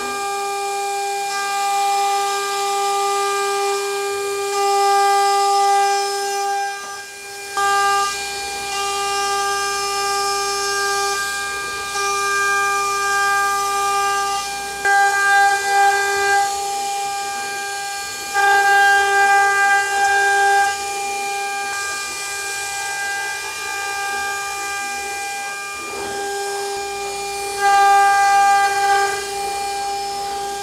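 CNC router spindle running with a steady high whine while a single-flute end mill cuts a metal part. The cutting noise gets louder in several short stretches, about halfway through and again near the end.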